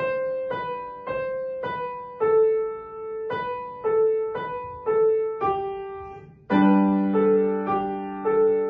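Upright piano playing a melody in separate single notes, about two a second. Just after six seconds in the sound dips briefly, then a louder chord with a low bass note comes in and rings under the melody.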